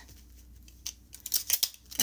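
Paper sewing pattern pieces being handled and shuffled on a table: a run of short crinkly paper rustles and light taps starting about a second in.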